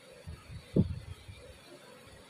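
Soft, low handling thuds, with one short louder thud a little under a second in.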